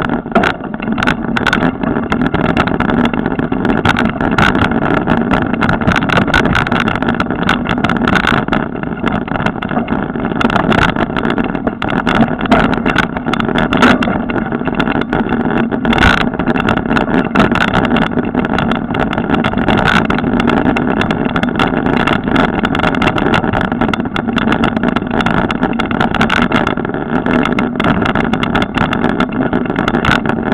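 Mountain bike ridden fast along a forest dirt trail, heard from a camera carried on the bike or rider: a loud, steady rush of wind and rolling noise with frequent knocks and rattles as the bike jolts over bumps.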